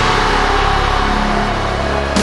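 A loud rushing roar that fades, with a slight downward glide in pitch, over a sustained low music drone.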